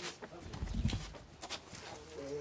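Tools and wooden boards being handled: a few light clacks and knocks, with a dull low thump around the middle.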